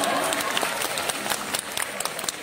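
Theatre audience applauding, the clapping thinning out and fading away.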